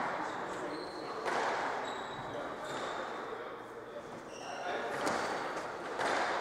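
Squash rally: the ball cracks off racquets and the court walls, with sharp hits about a second in and again near five seconds, each ringing in the court. Sneakers squeak briefly on the wooden floor between hits.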